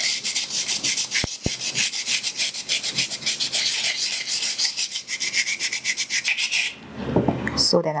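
Wet sandpaper rubbed fast and hard over a cast jesmonite terrazzo piece: a quick, even run of scratching strokes. It is sanding back the surface to reveal the terrazzo chips, and it stops shortly before the end.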